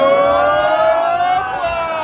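A long siren-like wail that rises slowly in pitch until about one and a half seconds in, then falls away.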